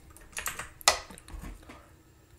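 A few light clicks and knocks from a cardboard burger box and its food being handled, the loudest a little under a second in.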